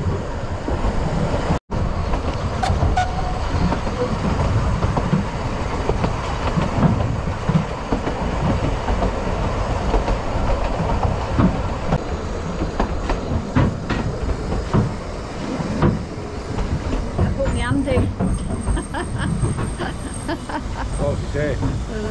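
Steady rumble of a narrow-gauge railway carriage running on the rails, with scattered clicks and knocks from the wheels and track, heard from inside the open carriage.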